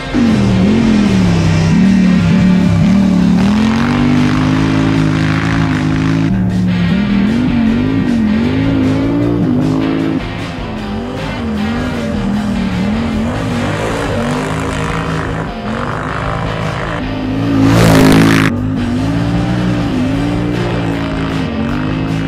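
Polaris Scrambler XP 1000 S sport quad's twin-cylinder engine revving up and down again and again as it is ridden hard through the gears on a loose dirt track. A short, loud rush of noise comes late on, over the engine.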